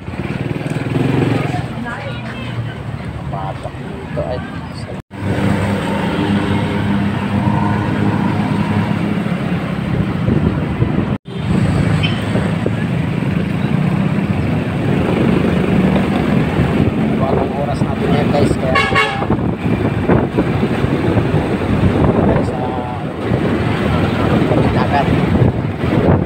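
Road traffic with a vehicle engine running steadily, and a vehicle horn honking in short toots about three quarters of the way through.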